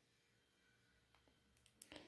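Near silence: room tone, with a few faint clicks about a second in and near the end.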